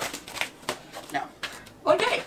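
Plastic bubble mailer rustling and crinkling in a few short rustles as a small cardboard box is pushed into it; a woman's voice starts near the end.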